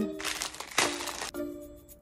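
Two short crinkling rustles of a plastic cracker packet, about a second apart, over background music.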